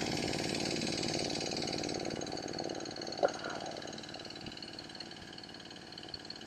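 Sawmill running in the background: a steady engine sound with many even tones that grows gradually quieter. About three seconds in, a short, sharp pitched sound briefly stands out above it.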